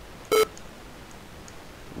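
A single short, loud electronic beep from the computer about a third of a second in, a buzzy tone with many overtones.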